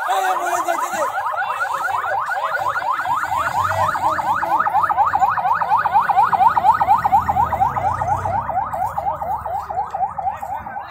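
Ambulance siren sounding a fast yelp: a rapid run of rising sweeps, several each second, repeating without a break.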